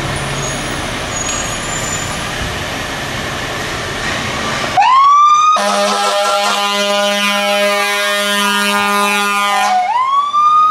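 Fire ladder truck pulling out with a steady engine noise. About five seconds in its siren winds up in a rising wail. Soon after, a long air horn blast of about four seconds drowns it out while the siren's pitch falls, and the siren climbs again right at the end.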